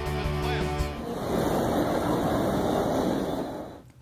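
The last second of a music sting, then a steady rushing noise of surf and wind that fades out just before the end.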